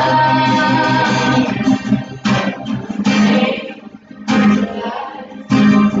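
Acoustic guitar being strummed: held chords at first, then a few slow strums, each left to ring.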